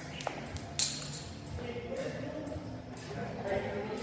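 A single sharp hit about a second in, typical of a training ball striking a hard surface, with indistinct voices echoing in a large gym hall.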